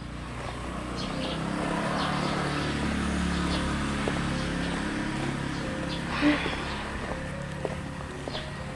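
Outdoor ambience: a steady low rumble like distant traffic, with a few faint taps and a short louder sound about six seconds in.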